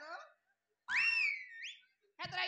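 A short human whistle, a little under a second long, about a second in: it rises sharply, holds, dips slightly, then sweeps up again at the end.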